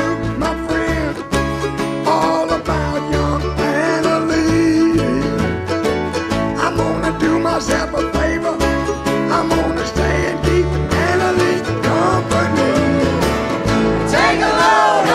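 Acoustic band playing an instrumental passage: F-style mandolin picking over acoustic guitar strumming and upright bass notes.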